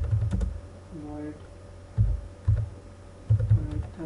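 Typing on a computer keyboard: key presses in short, uneven bursts, each a dull low thump with a click.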